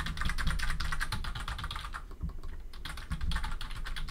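Computer keyboard being typed on in quick runs of keystrokes, entering digits into a number field, with a brief pause about two seconds in before the typing resumes.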